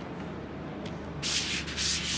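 Acrylic sheet sliding against another plastic sheet under a hand: two short rubbing swishes, one about a second in and one near the end.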